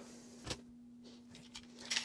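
A single light knock about half a second in, as a scrap-wood block is set down on a plastic 3D-printed stamp, over quiet room tone with a faint steady hum.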